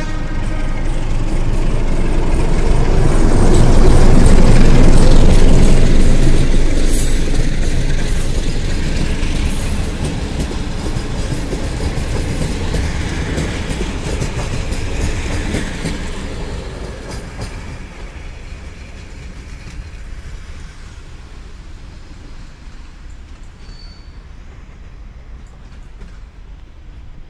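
Romanian CFR class 060-DA diesel-electric locomotive pulling a passenger train out of a station. Its diesel engine is loudest as it passes, about four to six seconds in. Then the coaches roll by on the rails and the sound fades steadily as the train draws away.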